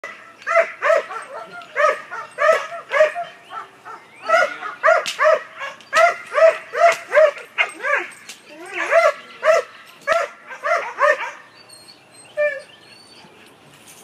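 A protection-trained dog barking repeatedly and sharply at an agitator, about two to three barks a second. The barking stops about eleven seconds in.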